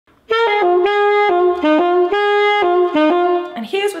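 Selmer Balanced Action saxophone playing a short, fast solo phrase of about a dozen notes, a little twiddle.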